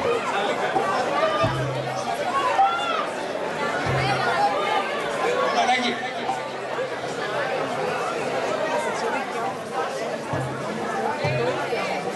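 Crowd chatter: many people talking at once as a large group gathers into a dance circle, with a few short low hums under the voices.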